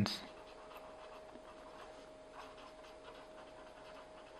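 Pen writing on paper: faint, scratchy strokes as a word is written out by hand.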